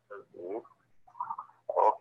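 A man's voice coming over a phone line, faint, choppy and garbled, in short broken bursts.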